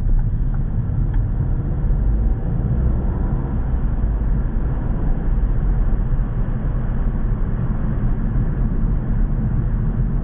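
Steady low rumble of a car's engine and tyres, heard from inside the cabin as it drives through a rock road tunnel.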